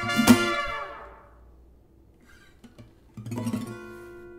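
Acoustic guitar strummed, the chord ringing out and dying away over the first second and a half. After a near-quiet gap, a soft final chord is struck about three seconds in and left ringing.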